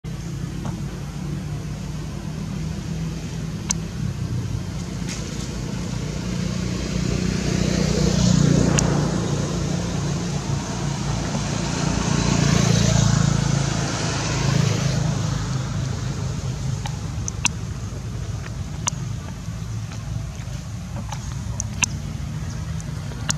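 Road traffic: a steady low rumble with two passing vehicles, each swelling up and fading, about eight and thirteen seconds in. A few short sharp clicks stand out over it.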